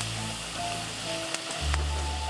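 Chicken pieces sizzling in a large paella pan over an open fire, a steady frying hiss, with background music playing over it.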